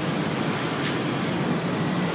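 Steady outdoor background noise, an even rumble and hiss with no sudden events, with a faint steady high tone running through it.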